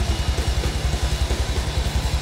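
Live heavy metal band playing, carried by a rapid, even pulse of bass-drum kicks with little else above it.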